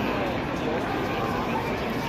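Stadium crowd hubbub: many voices chattering at once in a steady, even murmur.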